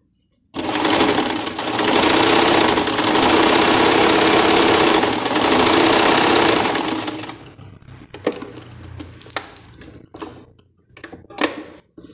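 Elgin JX 4000 sewing machine running steadily for about seven seconds as it sews a decorative stitch, then stopping, followed by a few light clicks and fabric handling. It is stitching with the thread no longer breaking after being rethreaded through the tensioner.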